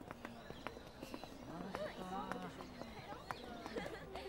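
Footsteps of several people walking on pavement, irregular sharp shoe clicks, with indistinct background chatter of voices.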